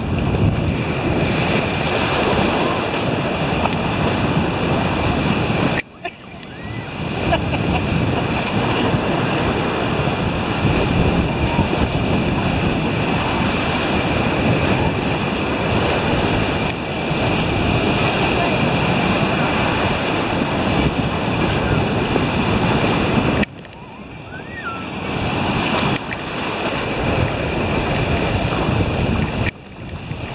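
Ocean surf breaking and washing in the shallows, with wind buffeting the microphone. The sound breaks off abruptly twice, about six seconds in and again about 23 seconds in, and each time comes back within a second or two.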